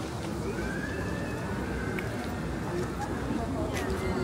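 Busy city street ambience: a steady murmur of voices and traffic, with a faint high tone that rises and then slowly falls through the middle, typical of a distant siren.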